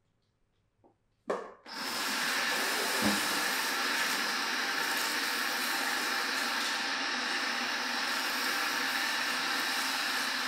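Water turned on through a handheld shower sprayer, rinsing hair in a salon shampoo basin: a short gush just over a second in, then a steady hiss of spray.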